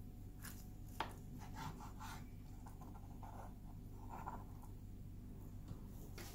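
Kitchen knife slicing through a Korean rolled omelette on a plastic cutting board: faint scraping strokes of the blade and a sharp tap of the knife on the board about a second in.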